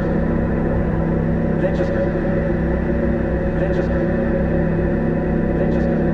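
Ambient electronic drone: layered, sustained synthesizer tones over a low rumble, with the piezo-amplified DIY noisebox run through delay and reverb, and a faint accent recurring about every two seconds.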